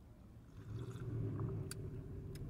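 Faint, low vehicle rumble that swells in about half a second in, with a few soft clicks.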